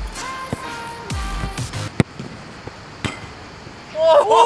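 A football being struck: one sharp thud about halfway through, with a fainter knock about a second later, over background music.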